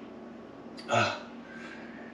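A man's short hesitant 'uh' about a second in, falling in pitch. Otherwise quiet room tone with a faint steady hum.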